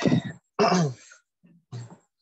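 A person clearing their throat and coughing in three short bursts, the middle one the longest, with a falling pitch.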